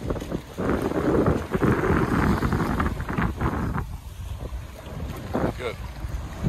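Strong wind rumbling on the microphone over choppy water, with water splashing around a small boat. The noise is louder through the first half and eases a little past the middle.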